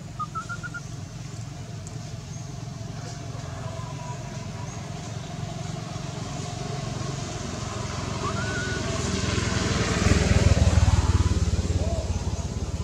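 Engine noise of a passing motor vehicle, a low rumble that grows louder and is loudest near the end.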